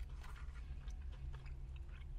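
People chewing mouthfuls of a fried chicken sandwich, with scattered small wet mouth clicks over a low steady hum.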